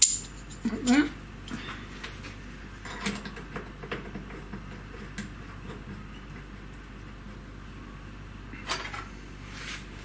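A sharp metallic click as an 8 mm collet is clipped into a steel collet chuck. Scattered light metal taps and clinks follow as the chuck is handled and offered up to a mini milling machine's spindle, with a brief voice sound about a second in.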